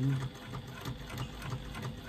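Domestic electric sewing machine running steadily, the needle stitching a long basting stitch through faux leather backed with 2 mm scrim foam, in an even mechanical rhythm.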